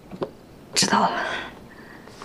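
A short, breathy whispered utterance from one person, starting a little before the middle and fading within about three quarters of a second.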